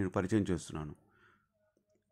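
A voice speaking for about the first second, the end of a sentence of narration, then near silence.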